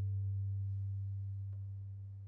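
A low cello note, plucked just before, ringing on and slowly fading away.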